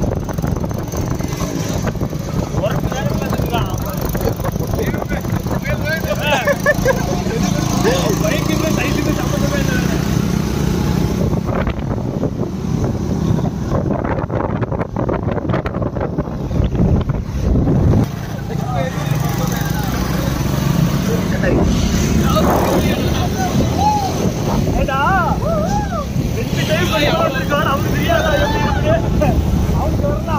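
Motorcycles running along a hill road: a steady engine drone with wind rushing over the microphone, and voices calling out over it in places.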